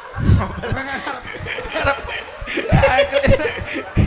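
People laughing and chuckling in short bursts, with a few low thumps.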